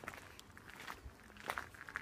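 Faint footsteps on asphalt: a few soft, uneven steps.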